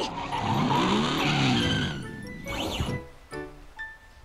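Cartoon action sound effect: a loud rushing noise whose pitch rises and then falls over about two seconds, followed by a short whoosh, over background music.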